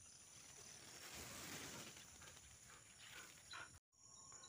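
Near silence: faint outdoor ambience with steady high-pitched insect chirring and a soft rustle about a second in.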